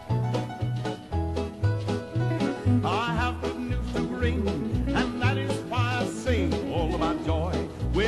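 Upbeat southern gospel band music, with a bass line bouncing about two notes a second under the other instruments and wavering melody lines above.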